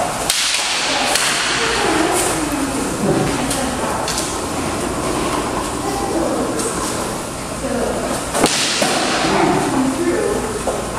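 Steel longswords and armour clattering during armoured sword drills: a burst of scraping and rattling at the start, then a sharp clack about eight and a half seconds in followed by more rattling.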